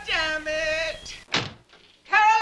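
A woman's wordless, drawn-out cry, high and bending in pitch, for about the first second. It is followed by a short, sharp rush of noise and then quiet.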